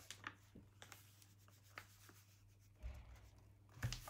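Faint kitchen handling sounds as flour is put into a metal mesh sieve held over a bowl of cake batter: light rubbing and a few small taps, a dull thump about three seconds in and a sharper knock near the end.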